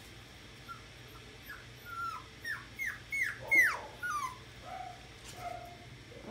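A seven-week-old puppy whimpering: a run of about eight short, high whines that each fall in pitch, loudest about three and a half seconds in, followed by two lower, softer whines.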